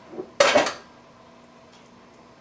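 A metal spatula scrapes and clinks against a stainless-steel wok as tofu and peas are scooped out. A light tap comes first, then one brief, loud clatter about half a second in.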